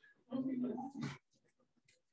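Brief, indistinct voice sounds in a quiet room: a short held vocal sound, then a louder, harsher sound about a second in.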